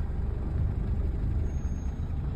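Dacia car engine running steadily at low revs, a low rumble heard from inside the cabin.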